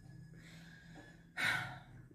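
A person's breath: one short, sharp exhale about one and a half seconds in, after a faint airy hiss.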